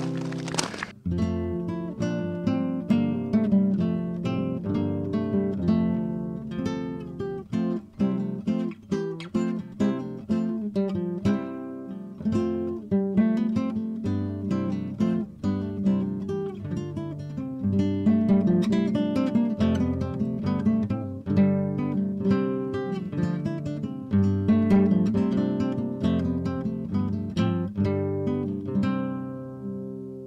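Background acoustic guitar music, plucked notes and strums, dying away near the end.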